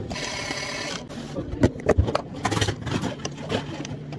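A small motor whirs steadily for about a second and stops. Then comes a busy run of clicks and knocks as plastic cups and containers are handled and frozen fruit clatters in a plastic cup.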